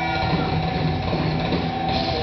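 A live thrash metal band playing loud: distorted electric guitars over drums.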